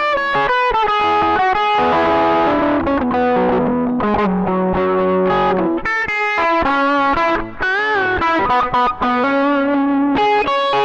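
Epiphone SG Special electric guitar played with an overdriven tone: a continuous lead line of single notes, with string bends and vibrato a little past the middle.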